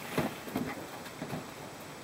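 Battery cable clamps being wiggled by hand on their terminals: faint, scattered small clicks and rattles. The clamps turn out to be a little loose.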